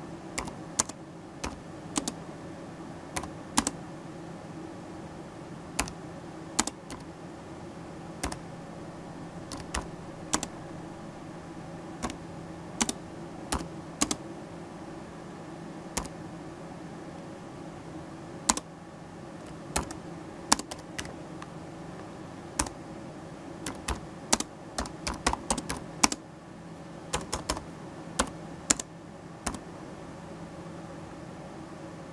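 Keys of a computer keyboard being typed one at a time, unevenly spaced, with a few quicker runs of keystrokes near the end, over a steady low hum.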